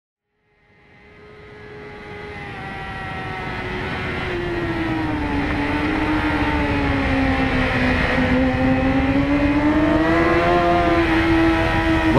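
Kawasaki ZX-6R sport bike's inline-four engine running at high revs on track, fading in from silence over the first few seconds. Its pitch sags slowly and climbs again near the end.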